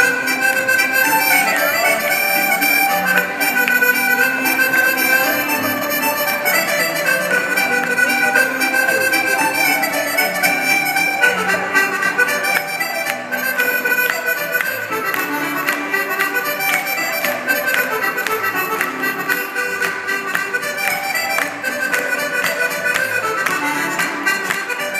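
Irish traditional dance music led by accordion, played over a hall PA, with many sharp taps from the dancers' shoes on the stage.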